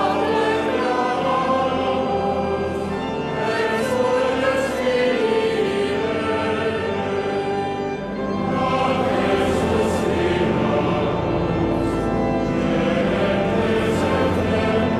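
Church choir singing a slow sacred hymn in long held phrases, with a brief break between phrases about eight seconds in.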